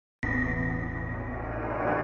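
Electronic transition sting: a sudden synthesized chord that starts about a fifth of a second in and holds, slowly fading.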